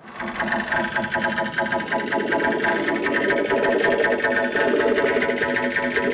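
Electronic music from a live set on mixers and synthesizers: dense layered synth tones with a fast flickering texture and no clear beat, building up over the first second.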